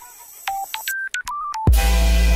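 Electronic outro music: a quick run of short single beeps at changing pitches, like phone keypad tones, then a loud, buzzing low synth note starting near the end.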